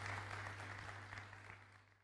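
Audience applauding, the clapping thinning and fading away near the end over a steady low hum.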